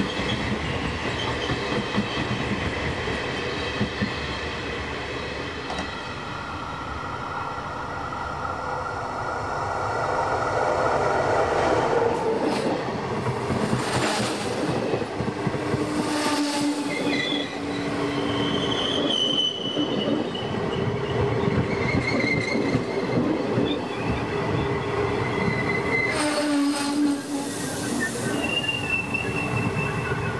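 Train wheels rolling slowly on rail, with a steady rumble and flanges squealing in several high tones that come and go. Loudness rises about a third of the way in, and brief surges of noise come around the middle and again near the end.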